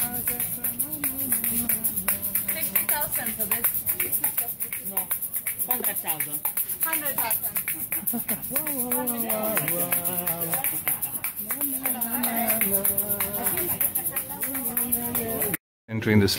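A man's voice in a sing-song, chanted delivery, with some notes held steady and others gliding, over a fast, even clicking rhythm.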